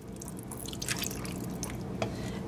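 Chicken broth pouring in a thin stream from a measuring cup onto chicken thighs in a slow cooker crock: a soft trickle with many small drips and splashes into the pooled broth.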